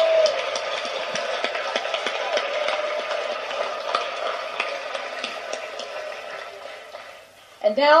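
Audience applauding with some cheering: a dense patter of claps that gradually dies away over about seven seconds.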